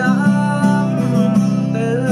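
Steel-string acoustic guitar strummed in a steady rhythm, playing the song's chords, with a man's singing voice over it in places.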